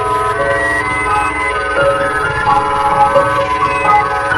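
Mock emergency alert system alarm: several electronic tones sounding together and stepping in pitch like a chord sequence, some wavering slightly, over a steady low rumbling noise.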